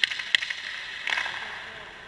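Ice hockey skate blades scraping across rink ice, with a couple of sharp clacks near the start and a longer scrape about a second in.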